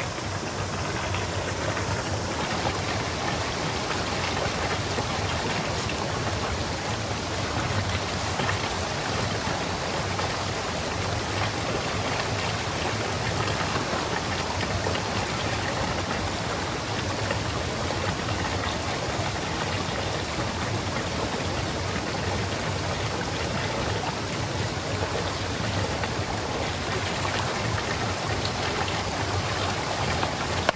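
Small spring-fed stream running over rocks, a steady rush of water.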